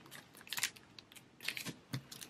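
Faint rustling of a clear plastic sleeve being handled as paper postcards are slid into it, with a few soft ticks about half a second and a second and a half in.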